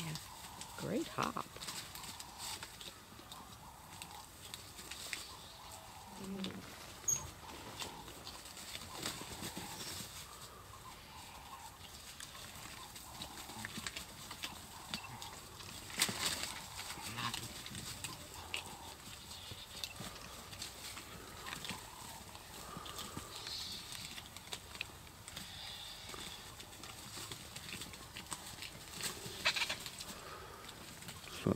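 Vultures feeding at a buffalo carcass: scattered sharp pecks and tearing at meat and bone, with a few short calls among the birds. The loudest knocks come about a second in and again around sixteen seconds.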